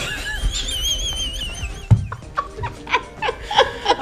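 Several people laughing, with background music playing under them.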